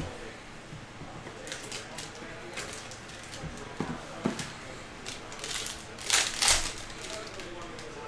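Handling of a rigid cardboard trading-card box: a few light taps and clicks, then a louder crinkling burst of a plastic pack wrapper about six seconds in, as the pack is opened and the cards are taken out.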